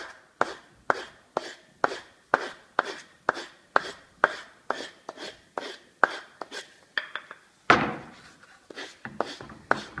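Hand sanding the end grain of a turned chestnut-wood bat with sandpaper on a block, smoothing the stub left where the turning nub was sawn off. Rhythmic rasping strokes, about two a second, with one louder stroke and a longer, softer rub near the end.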